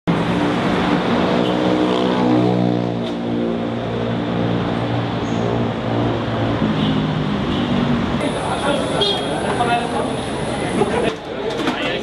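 Traffic noise on a city street, with a motor vehicle's engine running close by as a steady drone for the first few seconds and again briefly midway. People talk in the last few seconds.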